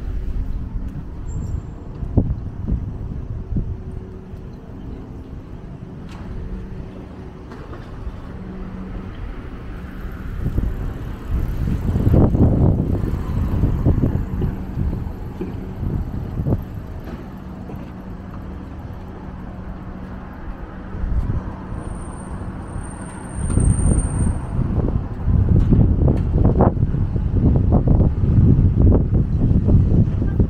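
Street traffic noise with a steady low vehicle hum, overlaid by gusts of wind buffeting the microphone. The buffeting is strongest near the middle and in the last several seconds.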